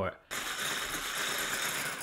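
Electric hand blender with a whisk attachment switching on about a third of a second in and running steadily at slow speed, its whisk beating egg whites in a glass bowl.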